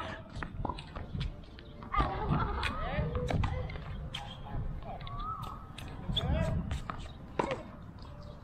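Indistinct voices talking, with scattered sharp knocks from tennis balls on a hard court.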